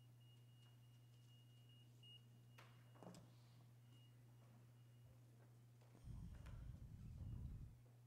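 Near silence: room tone with a steady low electrical hum and a few faint clicks, then a low muffled rumble about six seconds in that lasts under two seconds.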